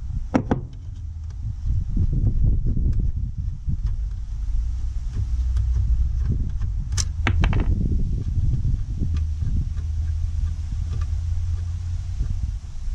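Scattered clicks and taps of hands and a tool working loose the 8 mm bolts on the metal flap under a Ford Transit driver's seat, over a steady low rumble. The sharpest clicks come about half a second in and about seven seconds in.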